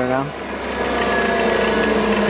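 Stator test bench running steadily: the drive motor spins a flywheel and stator, giving a steady machine hum with several level tones over a low drone.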